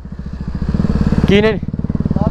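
Motorcycle engine running with an even, rapid firing beat.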